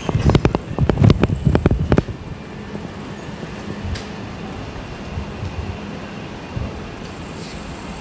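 Handling and wind noise on a moving handheld camera's microphone: loud irregular knocks and rumbles for about two seconds, then a steady outdoor background hiss with a few soft thumps.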